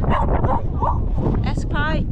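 A dog whining and yipping in short high cries, one falling whine near the end, over wind rumble on the microphone.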